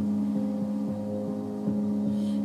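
Music playing over a car's stereo: a held chord over a steady, quick beat, with no singing in this stretch.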